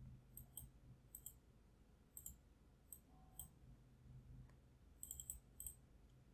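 Faint computer mouse clicks, scattered and some in quick pairs, over a low steady hum.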